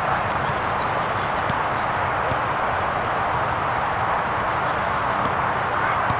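Steady, even outdoor rushing noise with no clear single event, only a few faint ticks in it.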